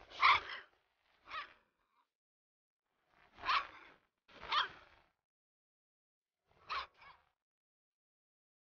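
Young yellow Labrador puppy giving short, rough little barks in three pairs, with silence between them, while crouched in a play bow.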